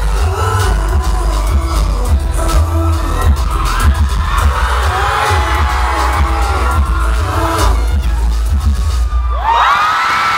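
Live pop song played loud through a venue PA, its heavy bass overloading a phone microphone into distortion. Near the end the music cuts out and the crowd screams and cheers.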